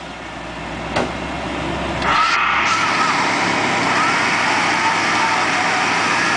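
Engine of a full-size Ford Bronco stuck in deep mud running, getting sharply louder about two seconds in, with a wavering whine over the engine noise. There is a single click about a second in.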